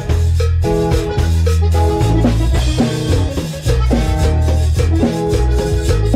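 A live cumbia band playing an instrumental passage: short repeated melody phrases, most likely from an accordion, over electric bass, strummed guitar, drum kit and hand percussion keeping a steady cumbia beat.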